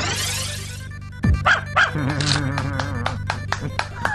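Cartoon sound effects over a steady musical backing: a rising, whistling glide that ends about a second in, a sudden low drop, then two short cartoon dog barks from the tangram dog as its shapes scatter, followed by a run of quick clicks and ticks.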